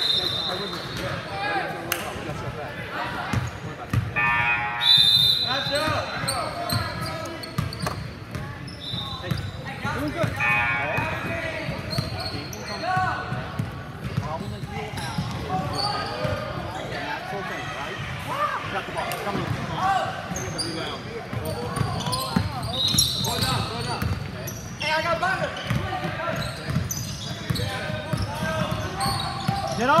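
Youth basketball game in a large gym: a basketball dribbling on the hardwood court, sneakers squeaking now and then, and spectators talking and calling out, all echoing in the hall.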